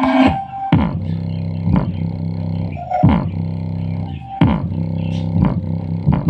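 A portable speaker playing bass-heavy music in a bass test. Deep bass notes are held, then broken by falling bass slides, several times, with little treble.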